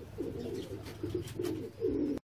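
Domestic pigeons cooing, a run of low coos one after another, the last one near the end the loudest.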